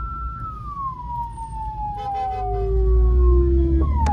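Ambulance siren heard from inside the van, sweeping down in one long slow falling tone, with a second lower falling tone coming in about halfway. The van's engine and road rumble sit beneath it, growing louder near the end.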